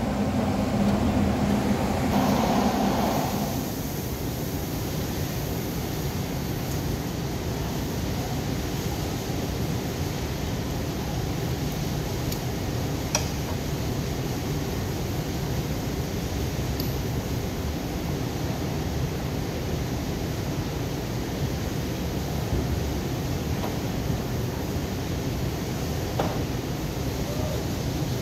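Steady background hum of a large car service bay, louder for the first few seconds, with a single sharp click about halfway through.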